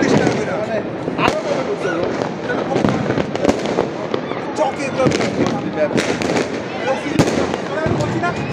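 Fireworks and firecrackers going off across the neighbourhood: a steady scatter of sharp bangs and crackles, with a few louder reports spread through, over people's voices.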